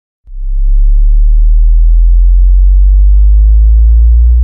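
A deep synthesized bass drone opens the remix. It starts abruptly about a quarter second in and holds very loud and steady, with its overtones slowly rising in pitch.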